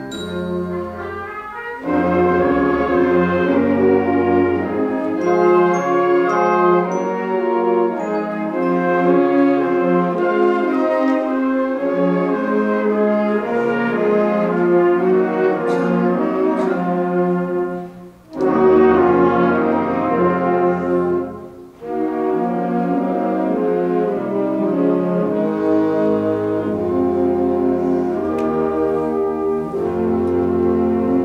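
Middle-school concert band of woodwinds and brass playing sustained full chords, with the brass prominent. The music breaks off briefly twice, about 18 and 21 seconds in.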